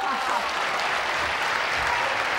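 Studio audience applauding steadily, greeting a correct guess.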